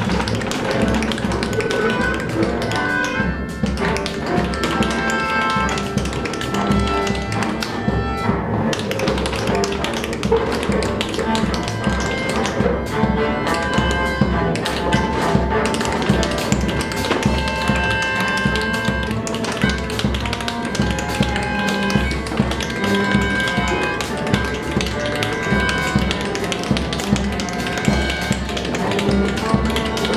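Live free-improvised jazz group playing: bowed cello and melodica holding notes over drums, with many quick sharp taps throughout.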